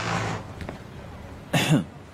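A person coughs once, short and sharp, about one and a half seconds in, after a brief breathy sound at the start.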